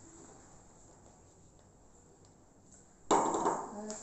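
Faint handling, then about three seconds in a single sudden clatter of a metal flour sieve set down on a ceramic plate, ringing briefly.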